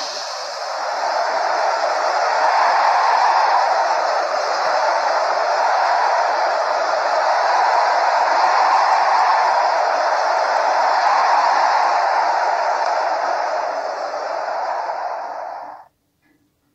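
A steady rushing noise that slowly swells and eases, then cuts off abruptly near the end.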